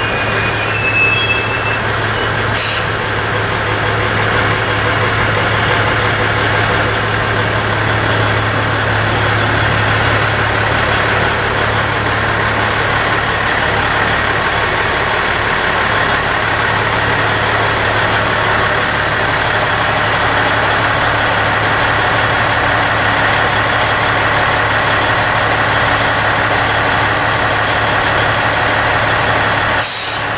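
JR East KiHa 110 series diesel railcar standing with its diesel engine idling: a steady low hum. A brief hiss about two and a half seconds in.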